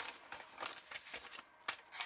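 Brown kraft paper envelope rustling as it is handled and pressed flat, with one sharp tap near the end.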